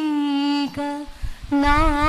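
A woman singing solo into a microphone with no accompaniment, holding long notes with a wavering pitch. There is a short break a little over a second in, then the next phrase begins.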